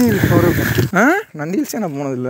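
A person's voice, talking in short spoken phrases.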